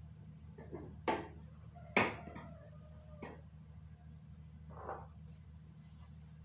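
Glassware and a ceramic plate clinking as drinks and food are set down and shifted: a few separate knocks, the loudest about two seconds in, with a short ringing after it. A steady low hum and a thin high whine run underneath.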